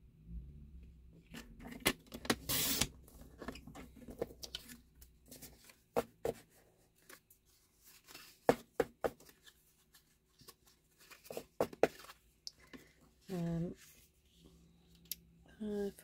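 Sliding-blade paper trimmer cutting patterned paper: one short scraping cut about two and a half seconds in, with scattered clicks and paper rustles as the sheet is moved and repositioned on the trimmer.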